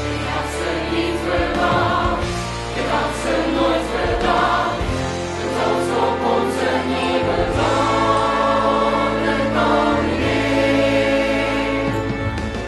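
Musical-theatre song number: a cast ensemble singing together in chorus over band accompaniment with a steady bass line.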